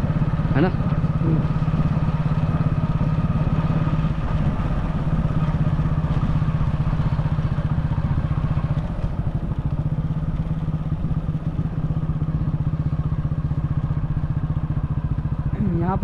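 Motorcycle engine running steadily at cruising speed, heard from on the bike while riding.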